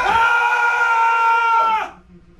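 Two men screaming together in one long, loud, held scream that cuts off abruptly near the end.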